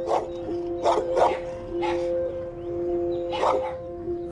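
A dog barking in short single barks, about five times, over a steady droning music bed.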